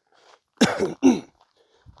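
A man coughing twice in quick succession, two short coughs about half a second apart.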